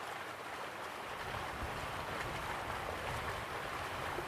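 Waterfall ambience: a steady, even rush of falling water, with a low rumble that grows a little about a second in.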